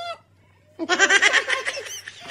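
Burst of high-pitched laughter in rapid pulses, starting about a second in after a short pause.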